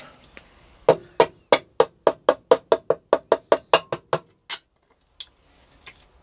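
Light hammer taps on the piston crown, about sixteen in quick succession at roughly four a second and then one more, driving the piston with its rings through a ring compressor down into the cylinder of a Motor Sich D-250 engine.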